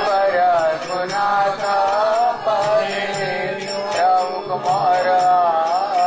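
Devotional chant sung in a drawn-out, wavering melody, with small hand cymbals (kartals) striking in a steady rhythm.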